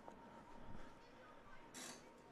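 Near silence: faint room tone with a thin steady hum and a short hiss near the end.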